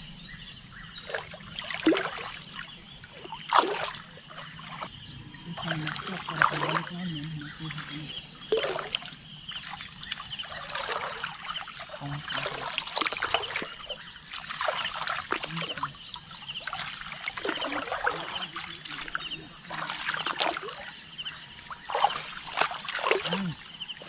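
People wading through shallow water and tall wet grass: irregular splashing, sloshing and swishing of stems, over a steady high hum in the background.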